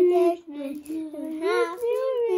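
A child singing a few drawn-out, sliding notes.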